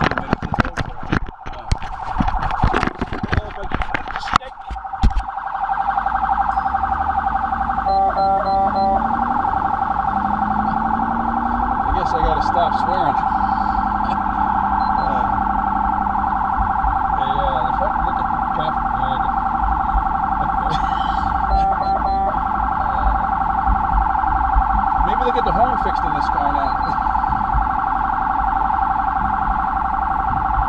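Knocks and clicks from a hand handling the camera, then about five seconds in a police siren starts and sounds steadily with a fast, fluttering wail, heard from inside a police cruiser.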